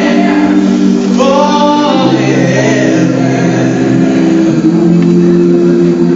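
Women's gospel vocal group singing in close harmony, holding long chords that change twice, with a higher voice gliding over the chord about a second in.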